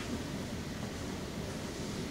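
Steady classroom room tone: a low hum with faint hiss and no distinct events.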